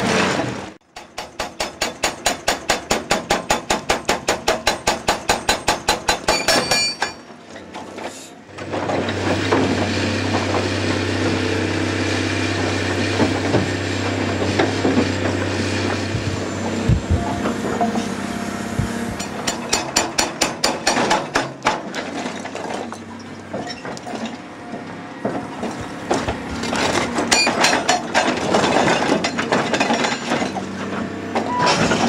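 Indeco hydraulic hammer on an excavator breaking rock. Rapid even blows, about seven a second, come in runs: the first about six seconds long, then two shorter runs near the middle and near the end. Between runs the excavator's engine runs steadily with scattered knocks.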